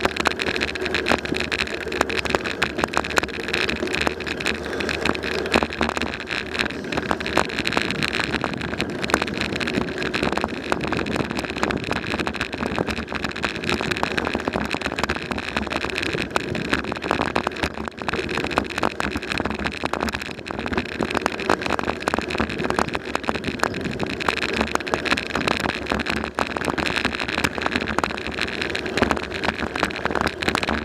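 Steady rattling and road noise from a bicycle rolling over pavement, picked up by a bike-mounted camera: a dense, continuous clatter of small knocks from the bike and the camera mount.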